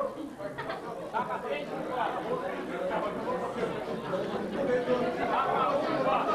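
Crowd chatter: many people talking at once, overlapping, with no single voice standing out until a nearer voice comes up near the end.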